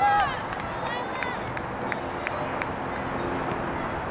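Shouting voices of players and spectators on a soccer field: one loud, high-pitched yell right at the start, then shorter calls about a second in, over steady outdoor background noise with a few sharp ticks.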